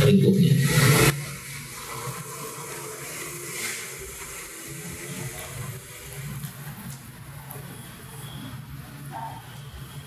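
A man's voice for about the first second, cutting off abruptly, then a low, steady room hiss with a few faint soft sounds.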